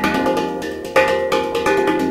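PANArt Hang (steel handpan) played with the hands: quick finger strokes on the tone fields, the ringing notes overlapping, with the strongest stroke about a second in.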